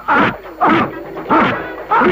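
A man crying out in pain as he is beaten: four yelps, about one every 0.6 s, each falling steeply in pitch.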